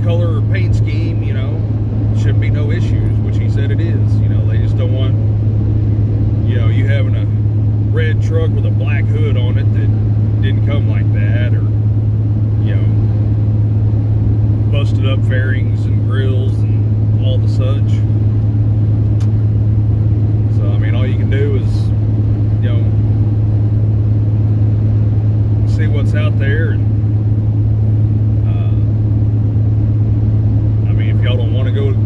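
Steady low drone of a semi truck's engine and road noise heard inside the cab while driving, with indistinct voices coming and going over it.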